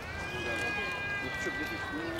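Background chatter of several people, with one long held high note that drifts slightly down in pitch over about two seconds.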